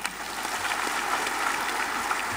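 Audience applauding, a steady clapping from many people that starts as the speech stops.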